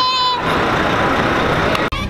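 Loud busy city street noise, mostly traffic, that cuts off abruptly near the end.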